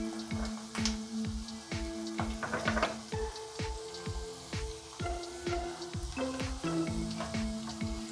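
Chopped onions sizzling in hot oil in a frying pan, under background music with held notes and a steady beat.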